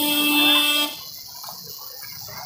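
A vehicle horn sounding one long, steady note that cuts off about a second in.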